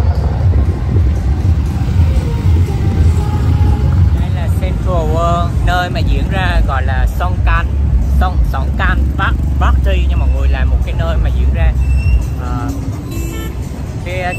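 Loud, bass-heavy street noise of music and road traffic. A voice comes in over it about four seconds in and stops shortly before the end.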